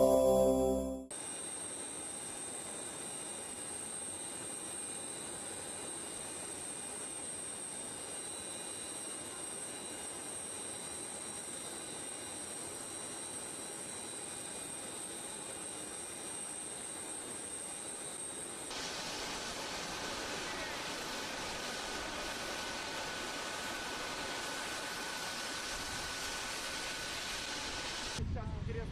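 The tail of a music jingle for the first second, then a steady rushing hiss with a thin high whine: airfield noise around a Tu-160M bomber on the apron. About two-thirds through the noise shifts and gets slightly louder, and a lower steady whine takes over.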